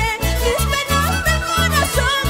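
Live band music: a carnival orchestra of electric guitars, bass guitar, trumpets and saxophone playing a dance tune over a steady bass beat of about four pulses a second.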